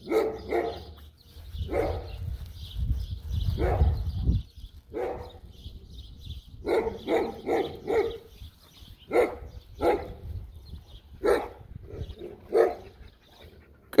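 A dog barking repeatedly in short barks, some coming in quick runs of three or four, with a low rumble under the first few seconds.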